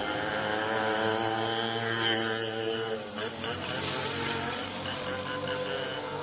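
A voice chanting or singing long, held notes, changing note about halfway through, over a steady low hum.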